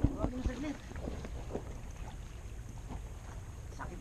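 Low, steady wind rumble on the microphone, with a faint voice briefly near the start.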